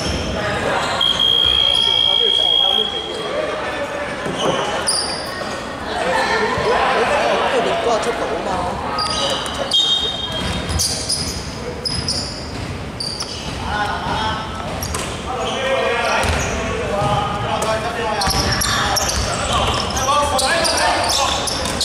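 Indoor basketball game in a large hall: a basketball bouncing on the wooden court amid players' indistinct, echoing voices.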